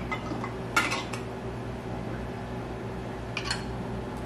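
Light metal clicks of a canning lid being picked up from a china bowl with a magnetic lid wand and set on a glass jar's rim: a couple of clicks about a second in and another couple near the end.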